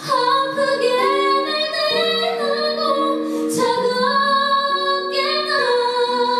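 A woman singing a slow song live into a handheld microphone, holding long notes over sustained instrumental accompaniment chords, with a quick breath between phrases about three and a half seconds in.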